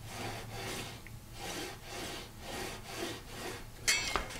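Mechanical pencil lead scratching across wood through the marking slot of a steel rule, drawing a line in repeated short strokes at about two a second, with a small click near the end.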